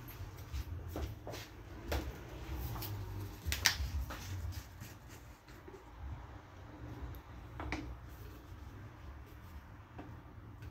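Scattered light knocks and clicks at irregular intervals, the loudest a little over three and a half seconds in, over a steady low hum.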